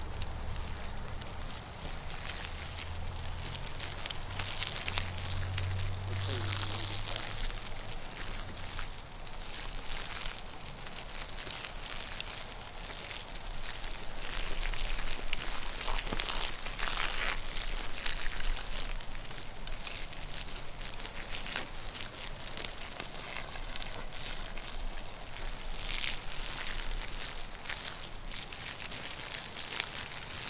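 Redwood model house burning in open flame: a steady wood fire crackling and popping, the pops growing denser and louder about halfway through.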